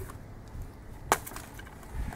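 A single sharp wooden knock about a second in, with a faint tick just after it: a wooden baton striking the spine of a knife to split a small stick.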